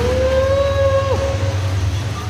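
A man's singing voice holding a long final note of a karaoke song, which falls off in pitch a little over a second in, over a steady low hum.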